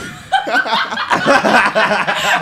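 Several people laughing together, breaking out a moment in.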